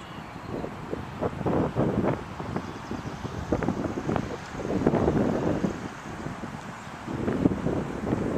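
Wind buffeting the microphone, rising and falling in gusts, strongest about five seconds in and again near the end.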